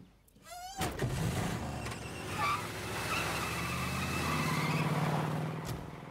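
A car door shuts, then an old sedan's engine starts and revs as the car pulls away, the engine note swelling and then fading.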